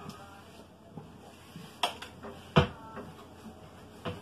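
Two sharp knocks about three-quarters of a second apart, the second the louder, against a wall-mounted shelf while it is wiped with a dry cloth.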